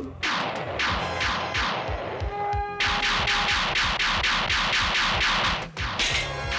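Cartoon battle sound effects: a rapid volley of zapping blasts, several a second, many of them falling in pitch, over action music.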